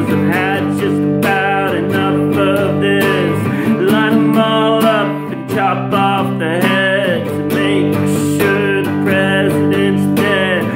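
Acoustic guitar strummed in chords while a man's voice sings over it, the melody gliding between notes without clear words.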